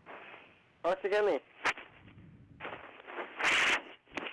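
Telephone handling noise: a sharp click, then a loud burst of rough rustling noise near the end, as a handset is passed and fumbled.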